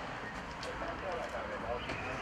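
Indistinct voices of several people talking at once, with a few sharp clicks.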